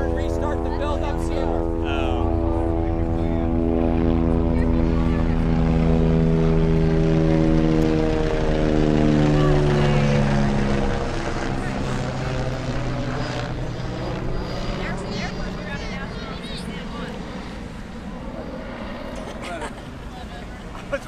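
Propeller airplane flying past: a loud engine drone whose pitch drops as it goes by, about nine to ten seconds in, then fades away.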